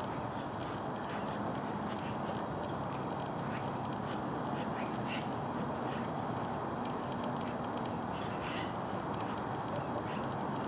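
Steady outdoor background noise, an even hiss and rumble, with a few faint, short, high-pitched sounds around the middle and again near the end.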